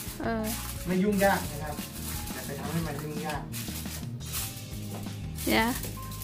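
Background music and a voice, with aluminium foil crinkling as it is pressed down around the edges of a baking dish.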